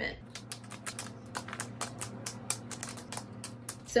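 Plastic pens, pencils and markers clicking against each other as they are dropped one after another into a fabric pouch: a quick, irregular run of small clicks.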